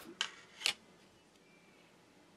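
Two short sharp clicks about half a second apart, the second the louder, as the removed back cover of the phone is handled and set down on the work table, followed by faint background hiss.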